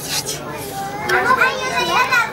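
Children's high voices chattering and calling out, with a short hiss at the very start.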